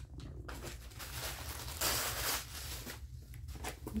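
Packaging being handled in a cardboard box: small clicks, then a rustling crinkle of wrapping that is loudest about two seconds in.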